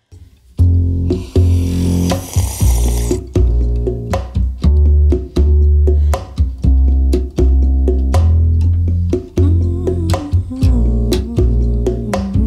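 Instrumental karaoke backing track starting up: deep plucked bass notes, guitar and clicking percussion on a steady beat, with a short hiss about a second in.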